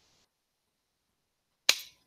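Near silence, broken near the end by a single sharp click that dies away quickly.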